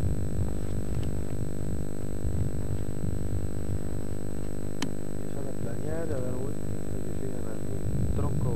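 A steady low rumble with a constant hum runs throughout. A single sharp click comes just before five seconds in, and a faint voice is heard briefly about six seconds in.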